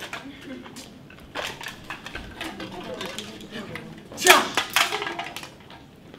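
Clinks, clicks and clatter of hard props, knives and cans, being handled and rummaged from a cloth sack, with a brief loud burst of voice about four seconds in.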